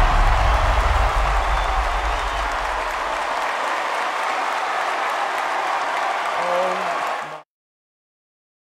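Audience applauding steadily, cutting off abruptly near the end.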